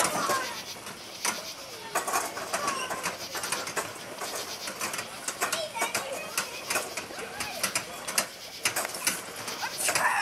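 Children's voices calling out and laughing on a bumper-car ride, with frequent sharp clicks and knocks throughout.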